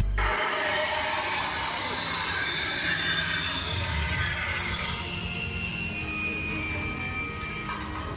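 Tour tram running through the studio backlot: a steady rushing noise, with high squealing tones sliding down in pitch in the second half.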